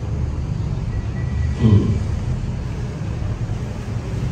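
Steady low background rumble, with a short murmur of a voice about one and a half seconds in.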